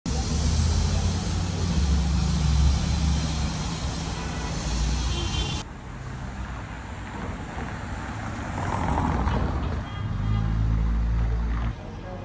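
City street traffic noise, louder in the first half and dropping abruptly a little over halfway through.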